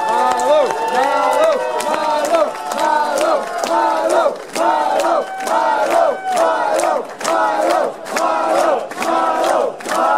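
A crowd cheering and shouting with clapping, which about four seconds in settles into a rhythmic chant repeated a little under once a second, claps keeping time.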